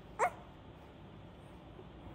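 An infant gives one short squeal rising in pitch, about a quarter second in.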